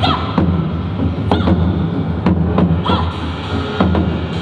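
Large barrel drum with studded heads struck in an uneven rhythm, about seven hits over a steady low rumble, as part of a live percussion performance.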